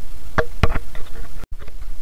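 A metal ladle knocks twice against a metal soup pot about half a second in, followed by a few fainter taps. The sound drops out for an instant near the end.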